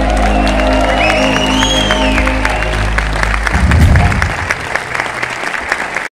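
A live rock band holds a final chord with electric guitars, bass and drums, ending on a loud closing hit about three and a half seconds in, while the audience applauds and someone whistles. The applause carries on after the band stops.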